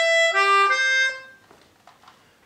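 Yamaha Pianica P-37D melodica, a mouth-blown keyboard reed instrument, playing a short phrase of several notes and stopping a little over a second in.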